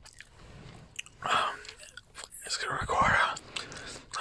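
Gum being chewed with the mouth, a run of short sticky clicks, mixed with soft whispering.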